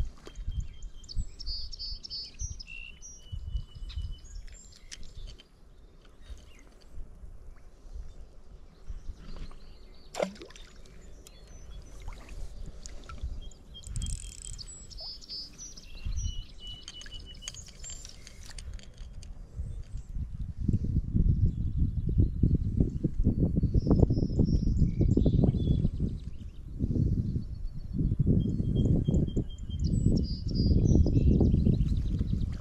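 Songbirds chirping and calling in short repeated phrases, in several spells. From about two-thirds of the way in, a loud low rumble on the microphone takes over.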